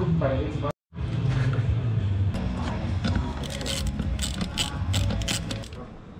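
A ratcheting screwdriver clicking in quick, irregular runs through the second half, as a fastener on a motorcycle swingarm is turned.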